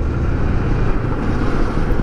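Kawasaki Versys 650's parallel-twin engine running steadily while riding at moderate speed, with wind noise over the microphone.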